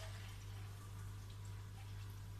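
Faint room noise with a steady low hum, and no distinct sound event.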